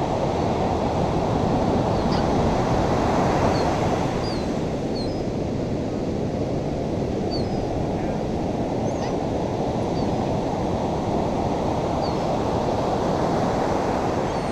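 Ocean surf washing onto a beach: a steady rush that swells and eases, with faint short high chirps scattered through it.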